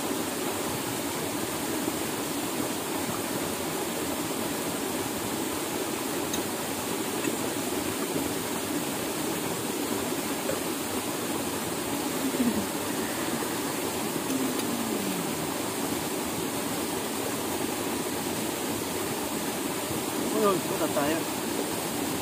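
Steady rushing water of a stream or small waterfall, an even noise without rhythm, with a few faint voices in the background.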